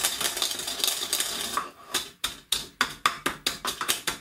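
Pestle pounding whole coriander seeds in a mortar to crush them coarsely. A quick, dense rattle of grinding for the first second and a half, then separate sharp knocks at about four a second.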